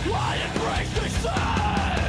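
Metalcore song playing: screamed lead vocals over heavy electric guitars and drums.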